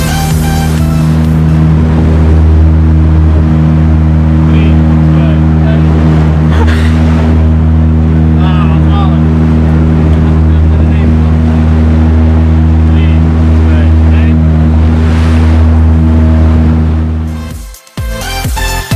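Small motorboat's engine running at a steady, even pitch. It is loud and unchanging, and cuts off just before the end.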